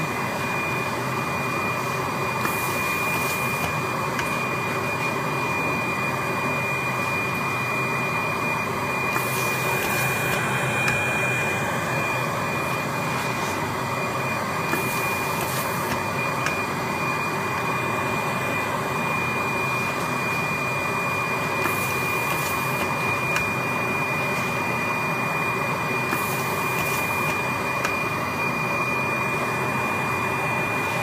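Regenerative ring blower running steadily with a constant whine, supplying suction through a hose to the head of a semi-automatic flat-bottle labeling machine. About five short hisses, each lasting about a second, come every few seconds over the steady noise.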